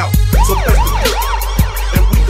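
A siren sound effect wailing quickly up and down, about five short yelps at roughly three a second, over the low bass thumps of a hip hop beat at a song change in a DJ mix.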